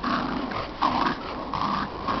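Dogs growling in short, repeated rough bursts while pulling on a rope toy in a game of tug of war.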